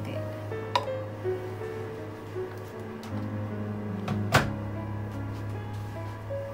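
Background music, with a light clink under a second in and a sharp knock a little past four seconds in as a glass mixing bowl and its steel platform are set onto a digital kitchen scale.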